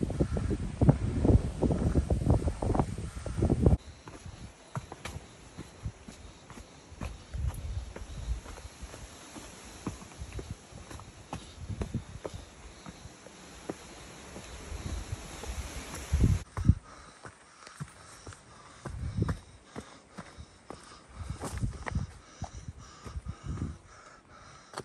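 Footsteps of a hiker in trail running shoes climbing a steep, rocky trail: irregular soft knocks and scuffs. For the first four seconds, wind buffets the microphone loudly.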